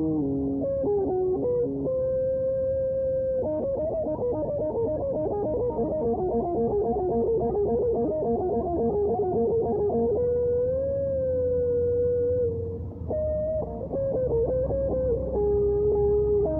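Electric guitar playing a lead melody: a held note, then a fast run of notes from about four to ten seconds in, then a long note bent up and held with vibrato.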